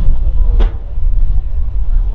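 Wind buffeting the microphone: a loud, gusty low rumble that covers most other sound.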